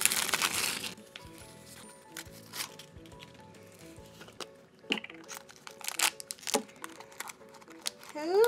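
Plastic packaging crinkling and tearing as the shrink-wrap is peeled off a small blind-bag container, densest in the first second, then a few sharp plastic crackles later on. Soft background music plays underneath.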